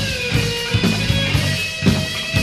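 Heavy metal band recording: electric guitar playing held notes over a steady drum beat.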